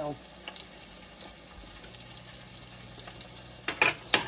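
A pork chop searing in oil in a stainless steel pan, a steady quiet sizzle. Just before the end come two sharp clatters as a utensil is handled at the pan.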